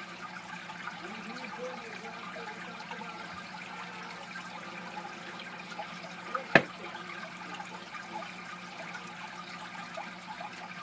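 Aquarium filter water trickling steadily with a low, even hum, and one sharp click about two-thirds of the way through.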